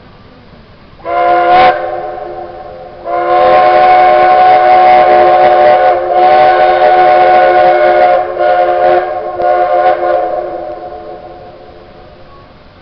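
Steam whistle of Shay geared steam locomotive No. 4, sounding a chord of several notes at once in a series of blasts: a short blast about a second in that trails off, a long blast with a brief break partway, then two shorter blasts fading out near the end. The whistle sounds as the locomotive departs with its train.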